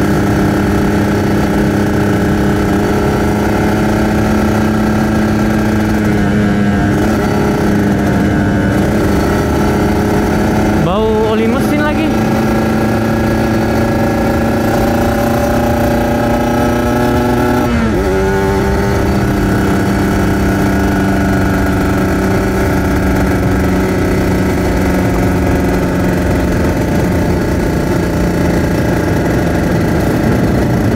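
Kawasaki Ninja RR 150's two-stroke single-cylinder engine running steadily under way, heard from the rider's seat. Its pitch sweeps sharply down and back up about a third of the way in, and dips briefly again a little past halfway.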